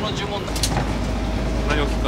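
Small fishing boat's engine running with a steady low rumble, starting about half a second in, with a sharp click just after it.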